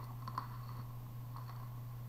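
A few faint clicks of glass beads on a strand knocking together as they are handled, over a steady low hum.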